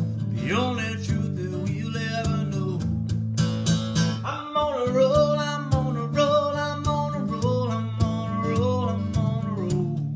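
A man singing over steadily strummed acoustic guitar chords in a solo performance.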